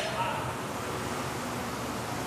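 Steady rushing noise of gas-fired glassblowing furnaces and glory holes running, with faint voices in the background.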